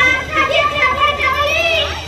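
Speech: a woman's raised, high-pitched voice delivering stage dialogue, picked up by overhead microphones.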